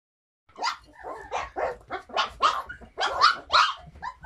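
Husky puppies barking in short, high yaps, about ten in quick succession, starting about half a second in.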